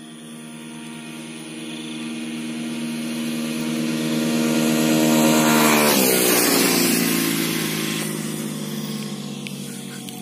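Motorcycle engine held at high revs as the bike approaches and passes at speed. It grows louder to a peak about five and a half seconds in, drops sharply in pitch as it goes by, then fades.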